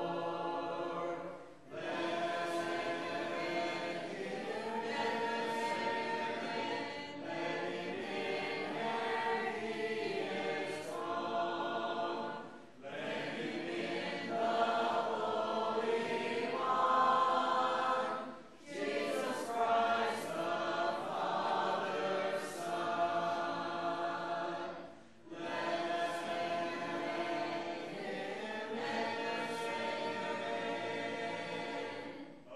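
A congregation singing a hymn together a cappella, with no instruments, many voices in harmony. The singing pauses briefly for breath between phrases four times.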